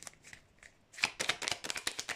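A deck of fortune-telling cards being shuffled by hand. After a quiet first second it sets in as a rapid, crisp patter of card edges flicking against each other.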